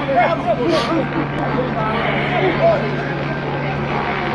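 A crowd of many voices calling out and talking over one another, with a steady low hum beneath.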